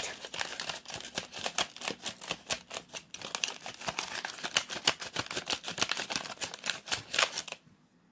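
A folded sheet of paper being creased and worked open into a paper fortune teller by hand: a dense run of crackles and crinkles that stops shortly before the end.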